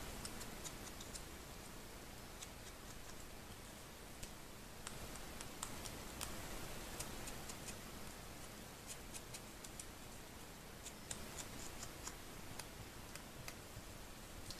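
Faint, scattered small ticks and light scratching of an ink blending tool's foam pad dabbed and rubbed along the edges of a thin paper strip, over low room hiss.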